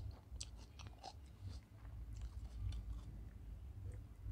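A person chewing a mouthful of fried chicken and biryani, with many short wet clicks from the mouth in quick succession over a low steady rumble.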